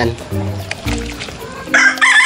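A rooster crowing loudly, the crow starting suddenly near the end, over soft background music of held notes.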